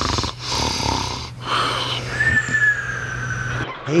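Weimaraner's noisy breathing and snuffling in uneven bursts, over a low steady hum. In the second half a thin high tone slowly falls in pitch.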